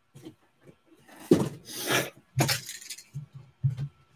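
A white plastic keychain with a metal split ring being picked up and handled: the ring jingles and clinks in two bursts about a second apart, followed by a few softer knocks.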